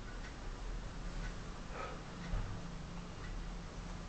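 Faint, even ticking about once a second over a steady low hum.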